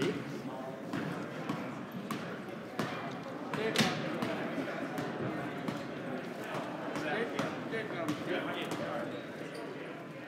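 Basketballs bouncing on a hardwood gym floor, irregular single bounces with the loudest about four seconds in, over a background murmur of voices.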